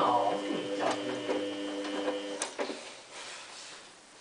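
Samsung WF8804RPA front-loading washing machine tumbling its wash: a steady motor whine with knocks from the drum and laundry, which stops about two and a half seconds in.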